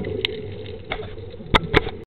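Underwater sound of water moving in heavy surge, a steady low rush, broken by four sharp clicks, the loudest two close together near the end.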